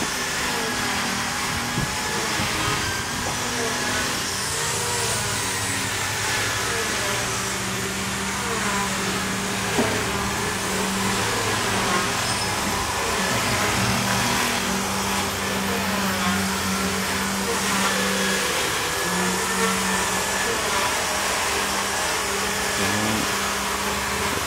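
A steady mechanical whir from a running motor, with a low hum that shifts pitch and cuts in and out every few seconds.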